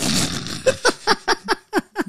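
Two men laughing: a breathy burst of laughter, then a quick run of short 'ha' pulses, about five a second.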